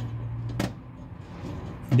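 A single sharp metallic click about half a second in, from a hand tool seating a brass gas orifice onto a stove burner's fitting, over low room noise.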